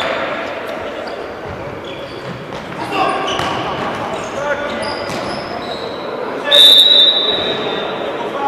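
Players' shouts and ball kicks echoing in a large sports hall during an indoor football game, then a referee's whistle blast, steady and high, about six and a half seconds in, the loudest sound here, stopping play.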